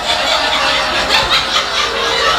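People laughing.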